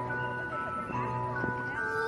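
Background music: a simple melody of held notes over a steady bass line.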